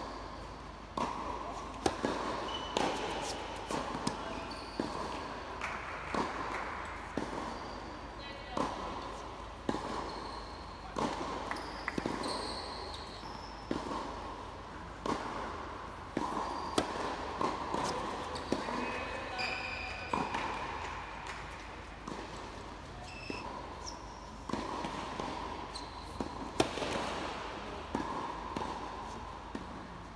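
Tennis balls bouncing on a hard court and being struck with rackets, a sharp pop every second or two, in a large indoor tennis hall.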